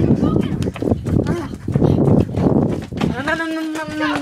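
Rumbling, jostling handling noise from a handheld camera carried on the move. About three seconds in, a person lets out a long cry held at one steady pitch for over a second.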